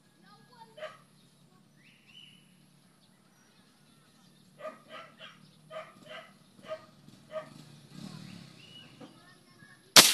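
A dog barks about six times, a short bark every half second or so, through the middle of the stretch. Right at the end comes the sharp crack of a single shot from a PCP air rifle converted from CO2.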